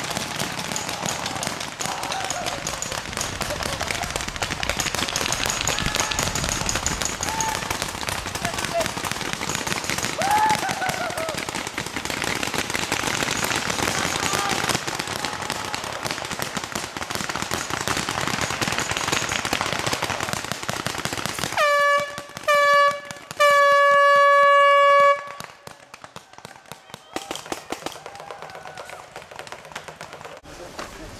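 Rapid paintball marker fire, many shots crackling in quick succession, with distant shouting. About 22 s in, an air horn sounds two short blasts and then one long blast, the signal to stop play.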